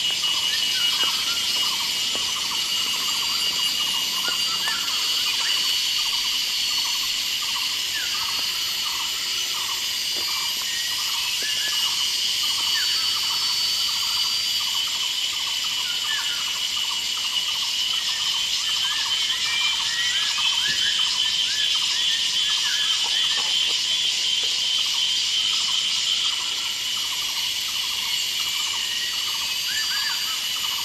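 Forest insect chorus: a steady, shrill, high buzzing that continues without a break, with many short chirping calls scattered underneath it.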